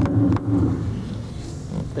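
A man's voice held low and steady in a drawn-out hesitation sound for about a second, then a pause filled with faint room noise.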